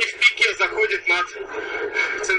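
Only speech: a man talking steadily.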